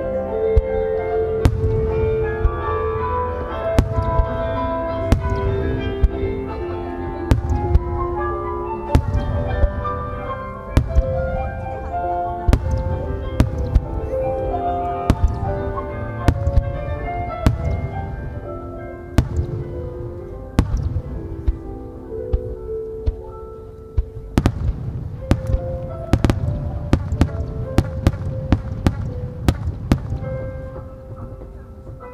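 Fireworks shells bursting in sharp cracks and bangs over music that accompanies the display. The bursts come thick and fast from about three quarters of the way in.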